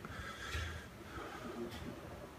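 Faint handling of small metal carburettor parts as the needle and metering-lever assembly is fitted into the carburettor body, with one light click near the end.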